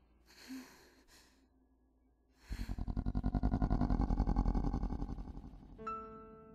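A woman's shaky breaths after waking from a nightmare, followed about two and a half seconds in by a loud, low, rapidly fluttering rumble lasting about three seconds, the loudest sound here. A few soft musical notes begin right at the end.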